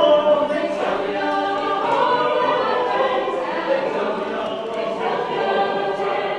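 Mixed choir of men and women singing in harmony, several voices holding long notes together.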